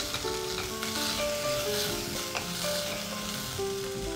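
Sliced onions and ginger-garlic paste sizzling steadily in hot oil in a steel pressure cooker, stirred with a wooden spatula. Soft background music with held notes plays underneath.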